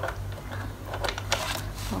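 A few sharp plastic clicks and handling noise as the air filter cover is fitted back onto the white plastic housing of a compressor nebulizer, with the clicks falling about a second in and near the end.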